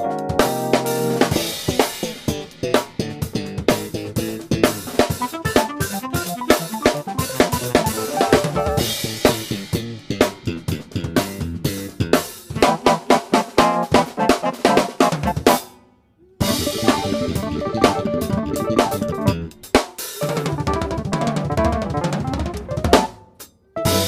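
Funk jam with a busy drum kit, snare and bass drum to the fore, under keyboard playing. The band cuts out to a brief silence twice, about two-thirds through and again just before the end.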